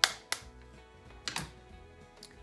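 Quiet background music, broken by two sharp clicks right at the start, a third of a second apart, and a brief falling swish about a second later.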